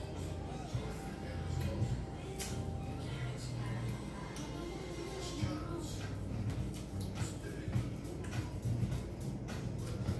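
Music playing in the background, with the small clicks and smacks of someone eating chicken wings by hand: chewing and picking meat off the bone.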